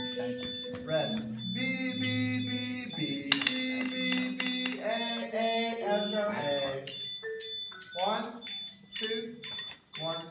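Marimbas playing held notes, with a voice over the playing.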